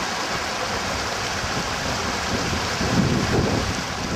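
A small rocky stream running, a steady rush of water, with wind buffeting the microphone.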